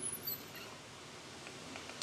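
Faint, steady outdoor background noise with a few small clicks near the start.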